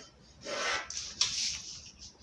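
A plastic pattern ruler and pencil rubbing and sliding over drafting paper, in two strokes: one about half a second in, another just past a second in.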